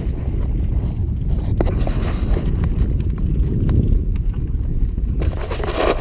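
Wind buffeting the camera microphone in a steady low rumble, with a few faint clicks.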